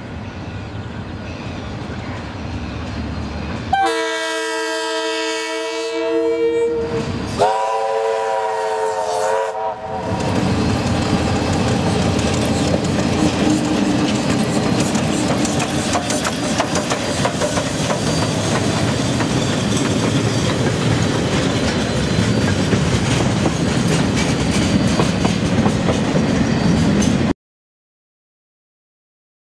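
A double-headed train, Ka-class 4-8-4 steam locomotive 942 with a DFT diesel-electric, approaches and sounds two long warning blasts, about four and seven seconds in; the second slides up in pitch as it starts. The locomotives then pass close by with a loud, steady rumble and wheel clatter that cuts off abruptly near the end.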